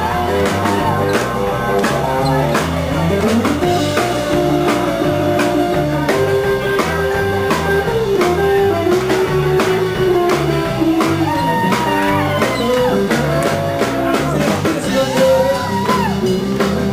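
Live rock-and-roll band in an instrumental break, loud and steady. Electric bass and a drum kit keep a driving beat under a lead electric guitar playing held, bending notes.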